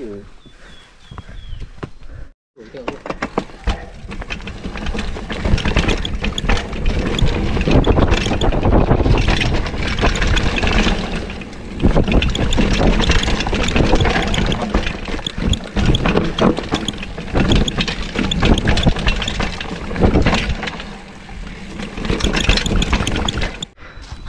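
Mountain bike riding down a bumpy dirt trail, picked up by a handlebar-mounted camera: a loud, continuous rattle and rumble of tyres, chain and frame over the rough ground, starting after a cut about two seconds in.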